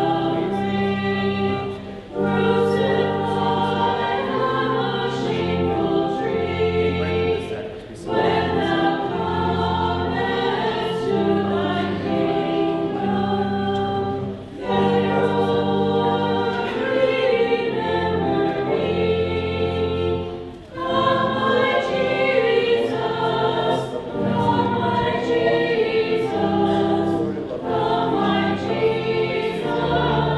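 Voices singing a hymn in phrases of about six seconds with short pauses between them, over sustained low accompanying notes: the offertory hymn sung while the gifts are prepared at the altar.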